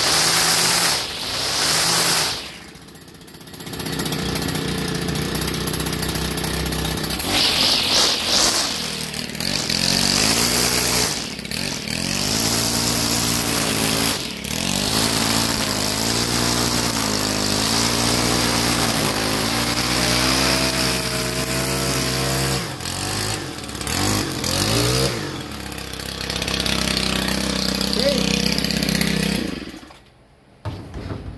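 Stihl FS 91 R string trimmer's small 4-MIX engine running and revving up and down as the nylon cutting line edges grass along a concrete sidewalk. The pitch rises and falls with the throttle, easing off briefly several times. This is a test cut of the freshly re-strung trimmer head.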